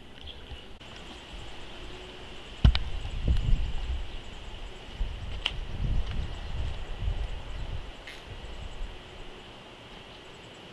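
Outdoor background noise with a faint steady high-pitched hum throughout. A sharp knock comes a little under three seconds in and is followed by several seconds of uneven low rumbling.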